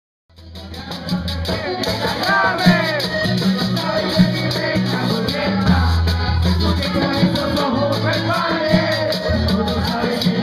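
A vallenato band playing, fading in over the first second: a steady bass line, a fast rattling percussion rhythm, and melody lines that glide up and down.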